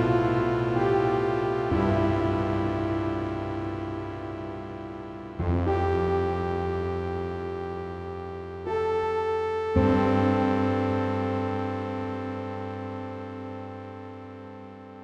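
Slow, gentle ambient chords from a software synthesizer, the 4Waves Synth AUv3 played back in a GarageBand project. A new chord comes every few seconds, each one held and fading gradually.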